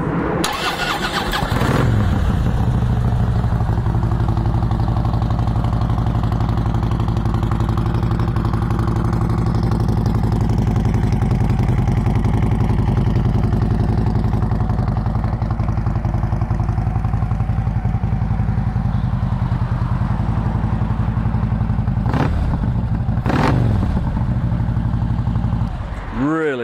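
2012 Harley-Davidson Street Glide's V-twin with an aftermarket Cobra exhaust: the starter cranks for about a second and a half, the engine catches and settles into a steady idle, then two quick throttle blips near the end.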